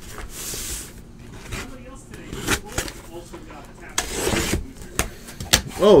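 Cardboard case being handled and opened: scattered knocks and clicks, with longer scraping rustles in the first second and again about four seconds in.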